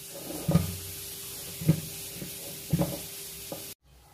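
Several soft, dull knocks of raw potatoes being picked up and set down on a wooden chopping board, over a faint steady hum. The sound cuts off suddenly near the end.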